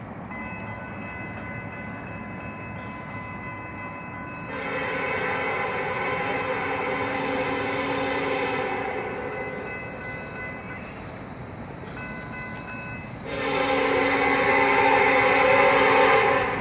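Locomotive air horn on KCS SD70ACe 4006 sounding two long blasts as the train approaches the grade crossing: the first about four seconds in, the second near the end, louder. Underneath, the crossing signal's bell rings steadily.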